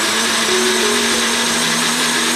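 Personal blender running steadily, its cup pressed down on the motor base, grinding fried onion, roasted coconut, peanuts and herbs with a little water into a smooth paste.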